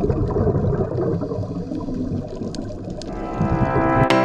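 Low, churning underwater rumble of water picked up by a camera in its underwater housing. Music fades in near the end.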